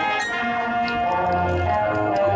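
Marching band playing, the brass holding long chords that move to new notes every half second or so over low bass notes.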